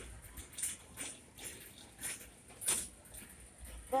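Soft, irregular rustles and scuffs of a handheld phone being carried while walking, over a faint store hiss. The loudest scuff comes a little before the end.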